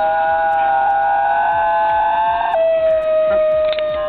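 New Guinea singing dogs howling: long, steady, melodious howls, two at different pitches together until about two and a half seconds in, then a single howl held on.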